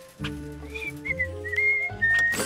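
A cartoon character whistling a few short, slightly sliding notes, starting about a third of the way in. Under it, background music holds low sustained notes.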